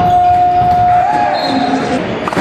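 A long, steady, whistle-like tone that wavers briefly about a second in and stops just before the end, over the general noise of a handball game in a sports hall.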